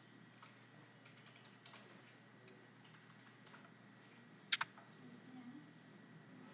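Faint computer keyboard keystrokes, with two sharper key presses in quick succession about four and a half seconds in.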